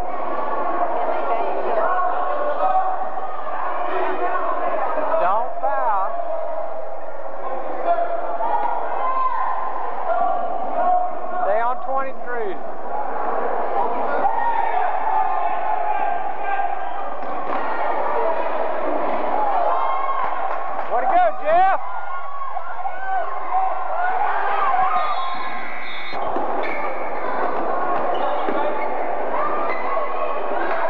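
Basketball being dribbled and bounced on a gym floor during a game, over a steady layer of overlapping voices from players and spectators.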